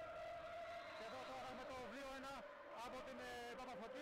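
Faint speech with a steady background hum.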